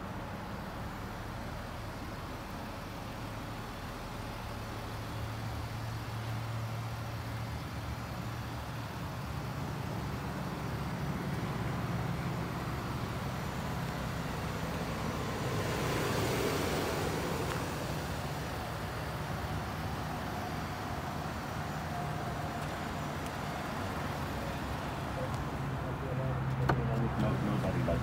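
2012 Jeep Grand Cherokee's 3.6-litre V6 idling steadily, heard from outside the vehicle. A broad rush of noise swells and fades about halfway through, and the sound grows louder near the end.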